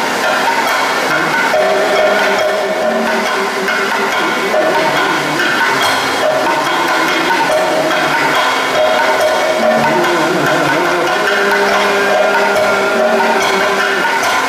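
Kathakali ensemble music: a chenda drum beaten with a curved stick in quick, sharp strokes, under a sustained melodic line with long held, gently bending notes.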